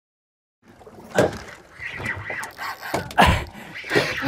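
After a brief dead silence, the open-water noise of a small fishing boat at sea, with two sharp knocks about a second in and about three seconds in.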